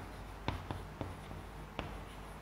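Chalk writing on a blackboard: soft scratching strokes with a few sharp taps as the chalk strikes the board.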